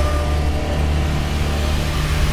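A loud, steady deep rumble under a hissing wash, with a few faint held tones above it.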